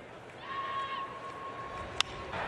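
Faint ballpark crowd ambience with a steady high whistle-like tone held for about a second and a half. At the very end comes the single sharp crack of a bat hitting a pitched baseball.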